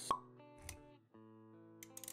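Intro music for an animated logo: a sharp pop just after the start, a low thump about half a second later, then held musical notes with a few clicks near the end.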